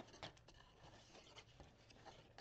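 Faint snipping and scraping of small scissors cutting through cardstock.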